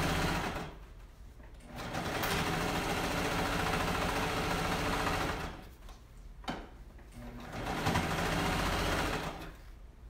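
Sewing machine stitching a seam in three runs. The first run stops about half a second in, the machine runs again from about two to five seconds, and it runs once more briefly near the end.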